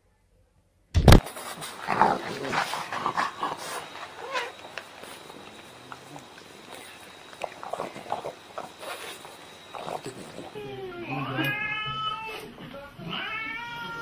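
A cat yowling in long, drawn-out meows that bend up and down in pitch, two of them in the last few seconds, after a stretch of voices and knocking.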